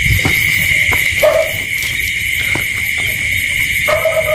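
Steady, high-pitched night chorus of crickets or other insects. A short, lower-pitched animal call sounds twice over it, about a second in and again near the end.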